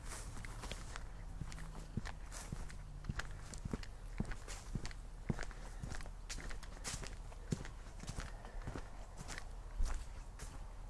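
Footsteps of a person walking along a grassy dirt path, an uneven run of light steps, roughly two a second.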